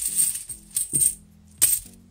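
UK 50p coins clinking and jingling against each other inside a cloth bag as a hand rummages through them, in three short bursts.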